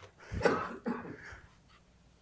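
A person coughing and clearing their throat: one short burst about half a second in, then a fainter rasp just after.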